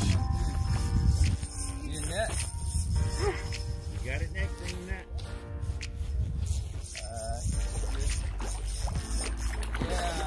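Background music with a singing voice, over a low wind rumble on the microphone in the first second or so.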